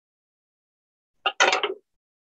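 Silence, then a brief clatter a little past halfway as a wooden spoon is lifted from the frying pan and set down on a cutting board.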